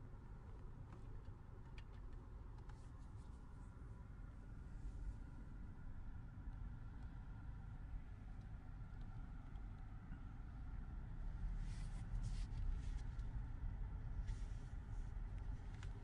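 Faint steady low rumble of background noise, with a few soft rustles or clicks near the end.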